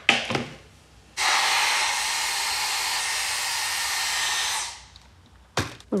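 Hand-held hair dryer blowing steadily for about three and a half seconds, switched on abruptly about a second in and winding down near the end, with a few short clicks of handling before and after.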